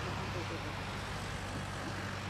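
Distant Boeing 747-400 with Rolls-Royce RB211 turbofans rolling down the runway: a steady low rumble with a broad hiss of jet noise.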